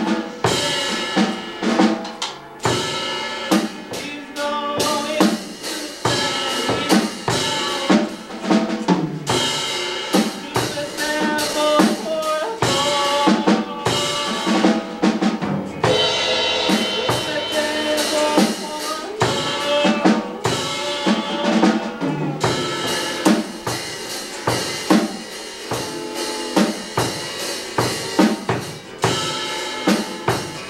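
Live jam of a drum kit and guitar: fast, busy drumming with kick and snare hits under sustained, changing guitar notes.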